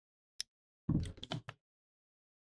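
A light click, then about a second in a short clatter of knocks as the parts of an air rifle's trigger assembly and grip are handled and held together for screwing.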